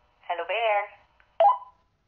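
Short production-logo sting: a brief voice-like call with a thin, telephone-like tone, then a short sharp blip about a second and a half in.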